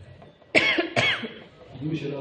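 A person coughing twice, two sharp loud coughs about half a second apart, followed near the end by a shorter, weaker voiced sound like a throat clearing.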